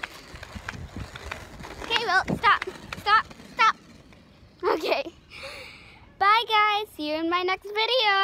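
A child's high voice, first in short wordless calls, then from about six seconds in singing a tune in held notes. Light knocks and thumps of handling the camera while running come in the first two seconds.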